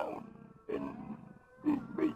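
A man's voice in a deep, put-on roaring voice, not ordinary speech: two drawn-out sounds about half a second each, with a short pause between them.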